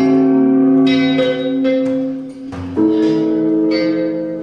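Live trio music for lute, percussion and electric guitar: two long ringing chords, the second struck nearly three seconds in, each left to sustain and fade.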